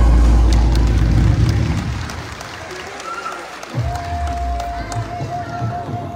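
Loud music for a Giddha dance plays through its final seconds and stops about two seconds in. Audience applause and cheering follow, with a steady high tone coming in about four seconds in.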